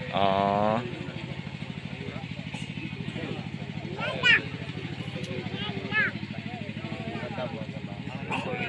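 An engine idling steadily with a fast, even pulse, under the voices of an outdoor crowd. Near the start a voice holds one level note for under a second.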